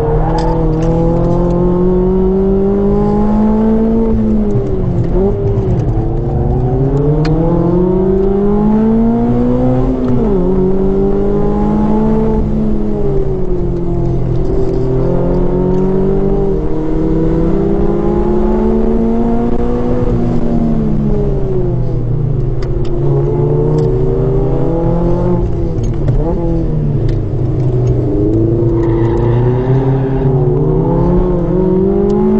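Modified Mazda MX-5 ND 2.0-litre four-cylinder engine, with a custom 4-into-1 exhaust manifold and Cobalt muffler, running hard on track. The engine note climbs steadily under full throttle for several seconds at a time and drops sharply a few times as the car brakes and shifts for corners, heard from the open cockpit.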